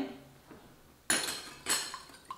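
A metal wire whisk clattering against a glass bowl as it starts beating a liquid egg mixture: two bright strokes, about a second in and again near the end.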